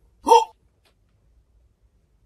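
A single short vocal sound from a man, rising in pitch and lasting about a quarter of a second, a quarter second in.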